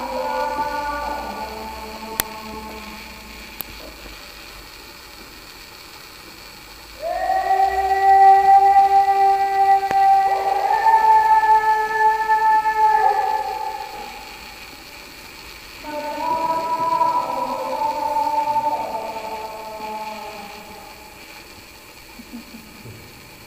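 Slow music of long held chords. The chords swell in suddenly about seven seconds in, shift to a new chord around the middle, and die away. A second group of chords enters about sixteen seconds in and fades near the end.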